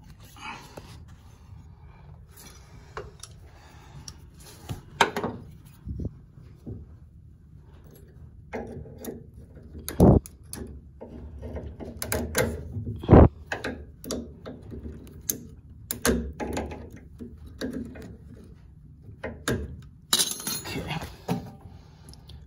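Hand-work noises as a metal tension clip is fitted over the inner tie rod's rubber boot: scattered clicks, rattles and knocks of metal parts being handled, with two louder knocks about ten and thirteen seconds in, over a low steady hum. A short hiss comes near the end.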